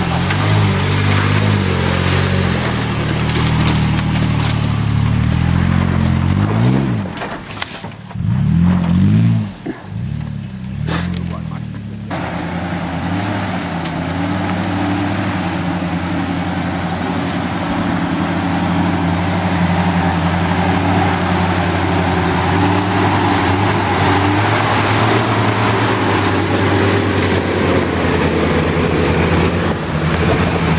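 Off-road 4WD engine labouring up a steep, rutted dirt climb. The revs rise and fall twice early on, and after a sudden change partway through the engine pulls at a steadier note.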